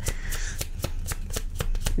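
Tarot cards being shuffled by hand: a quick, even run of card clicks, about seven a second.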